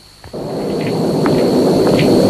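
Thunder rumbling: it sets in about a quarter second in after a short crack and swells steadily louder.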